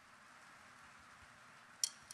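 Faint murmur of a large audience in a big hall, then near the end a single sharp click: the first tick of a drummer's count-in just before the band starts.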